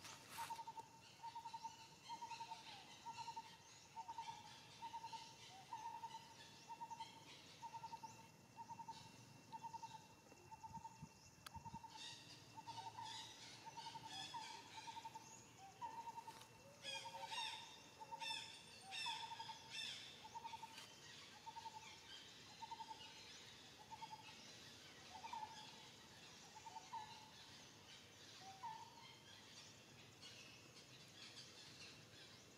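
A bird calling one short, hollow note over and over at an even pace, about three notes every two seconds, with brief chirps from other birds in the middle stretch.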